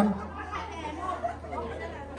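Background chatter of several people talking at once, fainter than the nearby voices around it, over a steady low hum.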